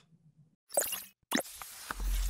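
Sound effects of an animated logo sting after a short silence: a brief sweeping sound under a second in, then a sharp hit a little later that trails into a faint hiss.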